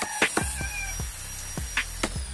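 Steel hammer striking a wood chisel cut into a wooden window frame: several sharp knocks at an uneven pace, the loudest about a quarter second in.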